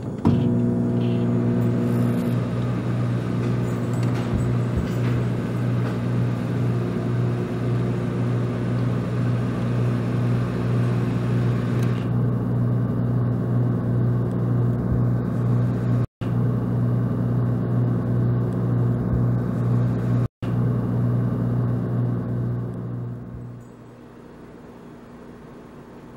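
Microwave oven with mechanical dials running: a steady low electrical hum that starts as the timer is set, cuts out twice briefly, and dies away shortly before the end.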